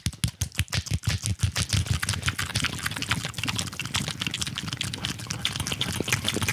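A rapid, continuous run of taps or slaps, many strikes a second, keeping an even pace with no break.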